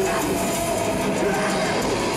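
Live psychedelic rock band playing on stage, picked up by a camcorder microphone: a dense, steady wash of sustained tones with a few short sliding notes.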